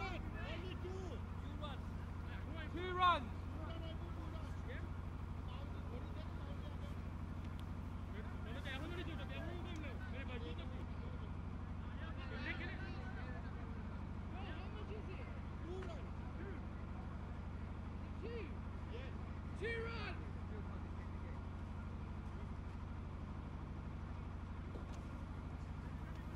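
Distant voices of cricket players calling across the field, one louder call about three seconds in, over a steady low hum.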